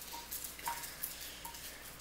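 Faint, scattered light ticks and handling noise from small paper slips being moved about on a tabletop.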